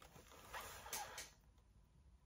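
Faint, brief rustling and scraping with a couple of light clicks about a second in, then quiet: a hand handling a leather-hard clay mug and a wooden modelling tool.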